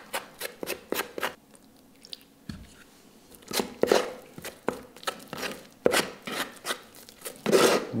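Small metal filling knife scraping and stirring Gyproc Easifill filler in a plastic pot, with only a little water in it, so the mix is still stiff and powdery: a run of quick gritty scrapes. The scraping pauses for about two seconds near the start, then resumes.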